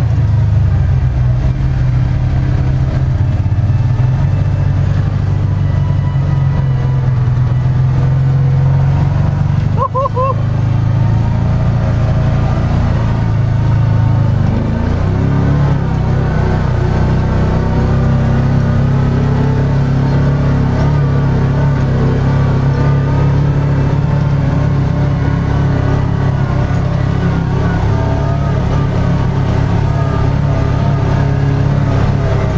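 UTV engine running steadily under load as it climbs a steep slickrock hill, with a low drone throughout. About ten seconds in there is a brief dip and a short two-note pitched chirp.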